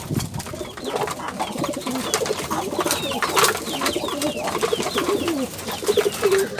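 Racing pigeons cooing in a loft, several birds calling over one another in low, wavering coos.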